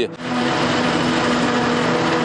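A self-propelled forage harvester running steadily as it chops green forage and blows it into a trailer truck: a constant machine noise with a steady hum underneath.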